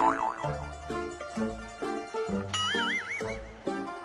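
Comic plucked-string background music with a steady bouncy rhythm, overlaid with cartoon 'boing' sound effects: a wobbling tone right at the start and a higher wobbling, warbling tone about two and a half seconds in.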